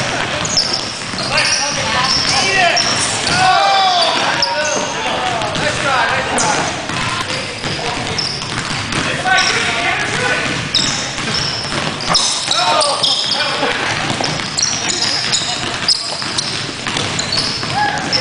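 Basketball game on a hardwood gym floor: the ball bouncing, sneakers squeaking in short high chirps, and players calling out to each other.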